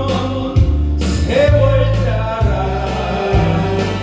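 A man singing a Korean song into a handheld microphone over a recorded karaoke backing track, holding one long note a little past a second in.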